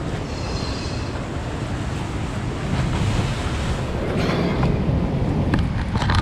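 Wind rumbling on the microphone over steady surf, with a few short scuffs of feet on rock in the second half as someone climbs a rocky sea cliff.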